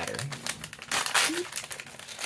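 Plastic packaging bag crinkling and rustling in irregular crackles as hands tear it open and crumple it, busiest a little after a second in.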